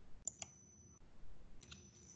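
A few faint, sharp clicks in the first half second over quiet call-line hiss, with a thin, steady high whine that cuts out about a second in.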